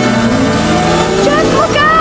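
Film soundtrack: a wordless voice crying out over steady mechanical whirring.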